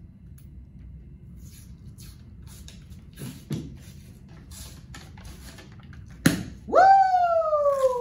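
Tube of refrigerated crescent roll dough being opened: the paper wrapper crackles as it is peeled, then the cardboard can bursts open with one sharp pop about six seconds in. Right after, a woman's startled squeal that falls in pitch for over a second.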